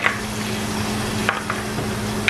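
Minced garlic sizzling in hot oil in a clay pot, stirred with a wooden spoon that knocks and scrapes against the pot a few times.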